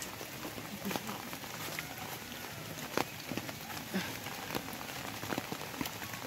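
Rain falling steadily on leafy vegetation, an even hiss with scattered sharp ticks of drops and small snaps and rustles among the plants.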